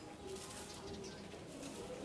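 Faint, low cooing of a bird, heard over quiet background noise.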